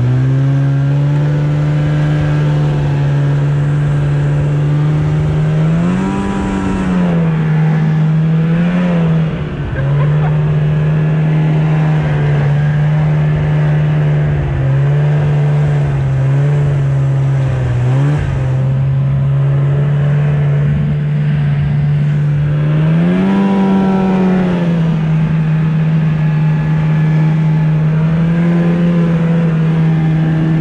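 Arctic Cat 570cc two-stroke snowmobile engine running under throttle at a steady pitch. It revs up briefly twice, about a fifth of the way in and again about three quarters through, and eases off for a moment a couple of times in between.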